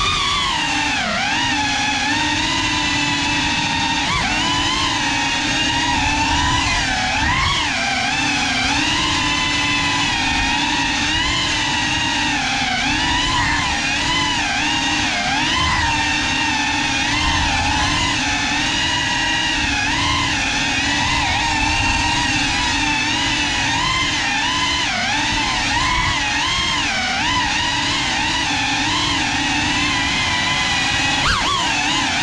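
GEPRC Cinelog 35 ducted FPV cinewhoop drone flying, its motors and propellers whining steadily with a pitch that keeps rising and falling as the throttle changes.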